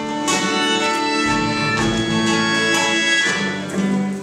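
Live band playing a slow instrumental song introduction: bowed cello holding long notes over guitar, with a new chord or note starting every second or so.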